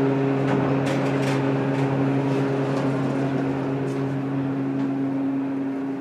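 Hotel passenger elevator running: a steady low hum with faint ticks about a second in, easing off near the end as the car arrives.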